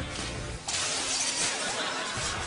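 Sled crashing in snow close to the camera: a sudden crash about two-thirds of a second in, followed by a steady rush of scraping noise.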